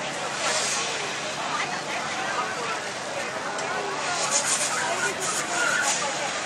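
Indistinct chatter of a crowd, with no clear words, over a steady background hiss.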